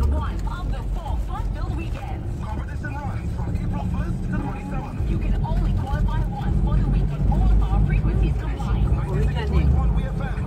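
Steady low rumble of a car's engine and tyres on the road, heard from inside the cabin while driving, with indistinct voices over it.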